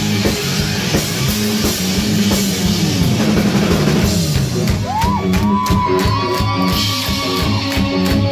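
A live rock band plays electric guitars over a driving drum kit. About halfway through, a held, bending high note comes in over the beat.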